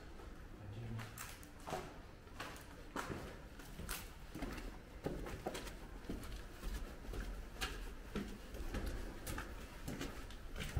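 Footsteps climbing concrete stairs strewn with grit and debris, about two steps a second.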